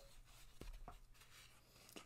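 Faint handling of a cardboard LP album jacket being turned in the hands: soft rustling with a couple of light taps.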